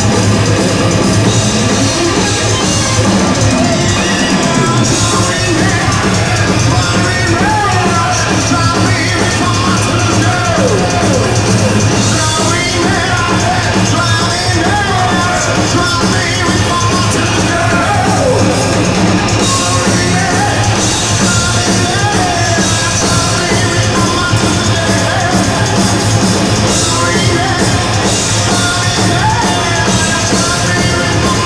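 A hard rock band playing live at full volume: electric guitar, bass and drum kit, with a lead line bending in pitch over the band from a few seconds in.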